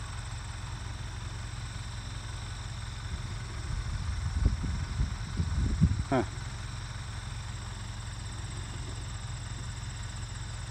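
Steady high-pitched chirring of crickets over a low rumble. From about four to six seconds in, louder irregular low buffeting hits the microphone.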